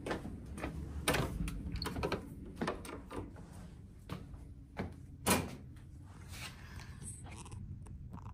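Footsteps and scattered knocks and thuds in a small tiled room, the loudest a single thud about five seconds in, over a low steady rumble.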